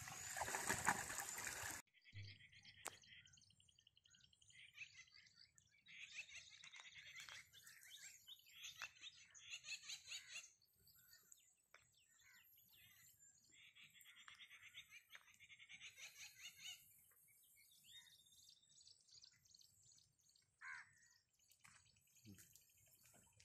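Liquid splashing and pouring as clay pots of illicit liquor wash are smashed, cut off abruptly after about two seconds. Then near silence with faint, rapid bird chirps and trills that come and go.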